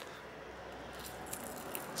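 Faint rustling with a few small clicks as fingers lift and peel back the thin black film shield over a laptop's RAM slots.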